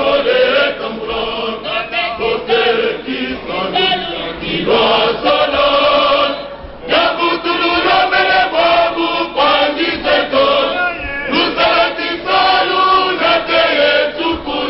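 Male choir singing together, with two brief breaks between phrases: about six and a half seconds in and about eleven seconds in.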